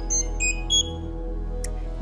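Electronic chime: a quick run of three or four short high beeps in the first second, over soft steady background music, with a brief click near the end.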